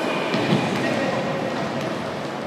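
Echoing sports-hall noise of a futsal game in play, with players' shoes and movement on the court and a single sharp knock about half a second in.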